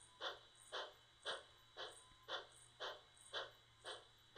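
Steam locomotive exhaust chuffing at a steady pace, about two faint chuffs a second, as a train works slowly through the yard.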